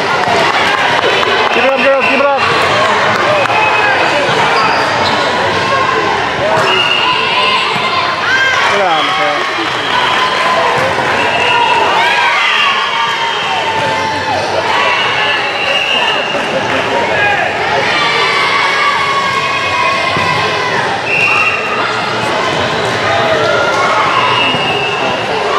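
Busy volleyball gym: many overlapping voices of players and spectators, with volleyballs being hit and bouncing on the court floor. Short high-pitched tones sound now and then over the din.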